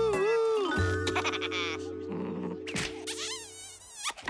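Cartoon soundtrack: a pitched cry that wavers up and down in the first second, then steady held musical tones over a low hum, with a fast high warbling sound near the end.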